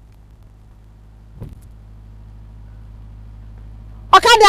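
A car engine running with a low, steady hum, and a brief sound about a second and a half in.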